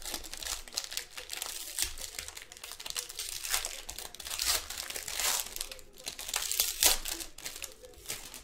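Foil wrapper of a trading-card pack crinkling and tearing as it is worked open by hand, loudest near the end.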